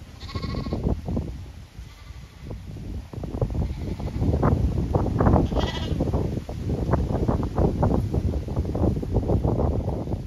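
Zwartbles sheep bleating twice, short and high, once just after the start and again about six seconds in. Underneath runs a dense crackling rustle that grows louder in the second half.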